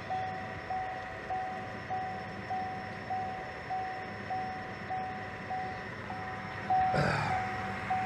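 A Buick LaCrosse's interior warning chime repeating steadily: a single mid-pitched beep of one tone, about one and a half to two beeps a second. A brief rustle of handling comes about seven seconds in.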